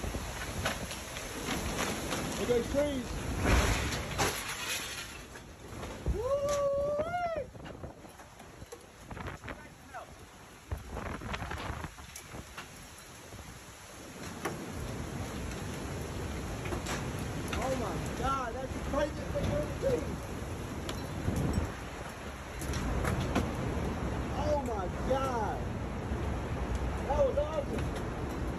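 Tornado wind and rain rushing across a phone microphone. The rush eases for several seconds in the middle and then builds again, and a voice calls out several times.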